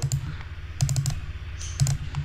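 Computer keyboard keystrokes: three short clusters of clicks about a second apart, over a faint steady low hum.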